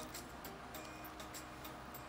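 Faint, rapid ticking, several ticks a second, over a low steady hum.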